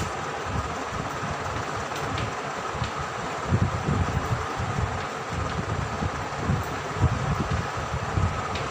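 Steady fan-like background hum with a low, uneven rumble, and a few faint chalk strokes on a blackboard as a word is written.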